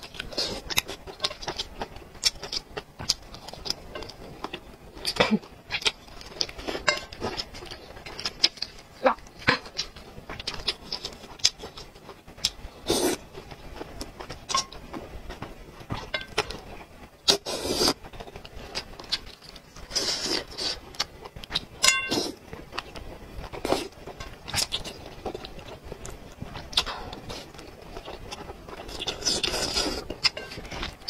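Close-miked eating sounds: wet chewing and lip smacks as short clicks throughout, with several longer slurps of thick noodles.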